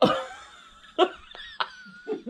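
A woman laughing: a loud outburst at the start, then further short bursts about a second in and again shortly after.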